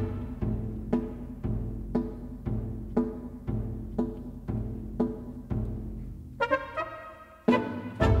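Chamber ensemble of winds, brass, strings and percussion playing an instrumental march, with a steady beat of low notes about two a second. A short run of higher notes comes in about six and a half seconds in, followed by a strong accent near the end.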